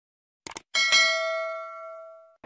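Subscribe-button animation sound effect: a quick double mouse click, then a bell chime struck twice in quick succession that rings on and slowly fades.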